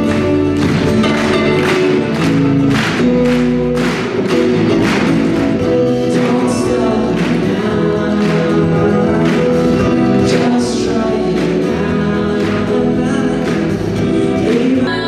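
A song played live on a solo electric guitar, with sustained ringing chords and regular strums, and a voice singing over it.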